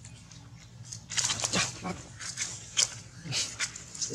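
Macaques calling: a run of short, sharp calls starting about a second in, loudest near the start.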